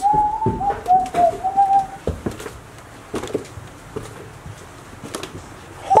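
A person whistling one high, wavering note for about two seconds, followed by scattered light knocks and footsteps on a debris-strewn floor.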